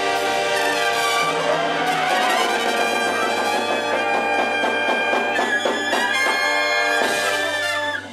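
Jazz big band playing live: trumpets, trombones and saxophones sounding together in full, held chords over the rhythm section.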